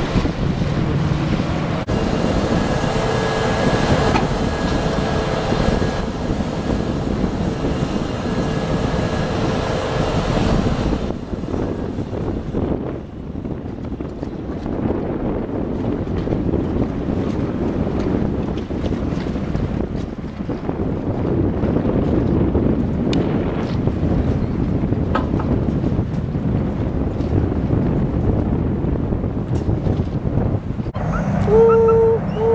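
Wind buffeting the microphone, a steady low rumble throughout. For the first ten seconds or so a steady mechanical hum with a hiss runs along with it, then stops.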